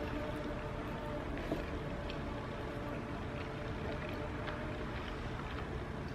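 Quiet closed-mouth chewing of creamy lobster mac and cheese, a few faint soft ticks, over a steady low background hum.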